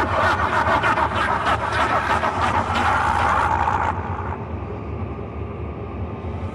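Breakdown in an early hardcore mix with no kick drum: a dense, noisy, machine-like sound effect with a fast flutter over a low hum, its high end filtered away about four seconds in.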